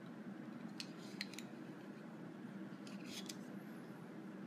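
A few faint, short clicks about a second in and a small cluster of them near the end, over a low steady hum.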